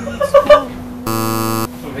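A man bursts out laughing in a few short, loud bursts. About a second in, a flat electronic buzzer sound lasts about half a second, over soft background music.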